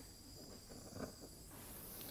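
Very faint room tone with a thin, steady high whine that stops about one and a half seconds in, and one soft small knock about a second in.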